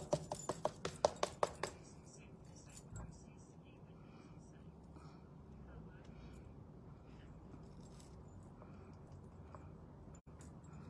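A quick run of sharp clicks in the first second or two, then faint, soft rustling as the thin backing sheet of a paint inlay is slowly peeled back off the board.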